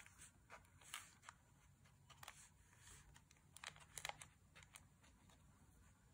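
Near silence: faint brush strokes on watercolour paper, with a few soft ticks.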